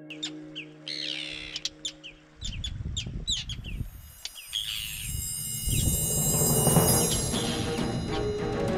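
Birds calling in quick, short chirps over a low rumble of wind on the microphone. Music with drums swells in over them in the second half and becomes the loudest sound.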